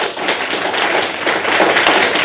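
A roomful of people applauding: dense, many-handed clapping.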